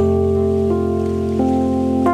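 Live band music in an instrumental passage of an afoxé song: sustained chords over a steady low bass note, with the upper notes stepping to a new pitch about every two-thirds of a second.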